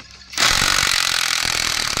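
Yellow DeWalt cordless impact driver driving a screw into a wooden plank. It makes a loud, dense hammering rattle that starts about half a second in, holds steady, and stops abruptly at the end.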